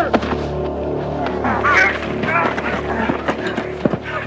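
A dramatic music score of steady sustained tones, with a person's short, high cries over it, mostly in the middle of the stretch.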